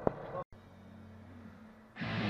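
Two sharp clicks, then after a sudden drop-out a faint, steady low hum.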